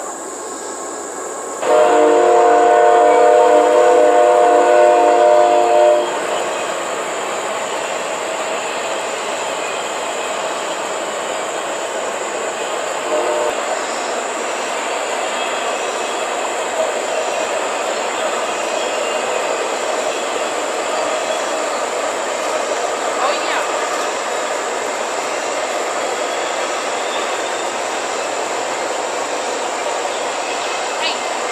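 A train horn sounds a loud, steady multi-note chord for about four seconds, then a train rumbles steadily past.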